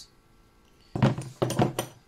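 Near silence, then about a second in a sudden knock followed by a quick run of sharp metallic clicks and knocks as a small jet engine's rotor assembly is handled while its end nut is being loosened.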